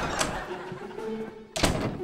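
A front door opening with a click, then shut with a loud thunk about one and a half seconds in, over light background music.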